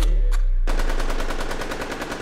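Machine-gun-fire sound effect over an arena PA: a rapid string of sharp shots, about fifteen a second, starting under a second in and fading away. It follows a falling synth swoop over the tail of a deep 808 bass.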